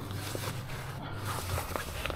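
Soft rustling, scraping and small clicks of nylon fabric as a stiff panel is pushed into the sleeve of a fabric dog back-seat extender, over a steady low hum.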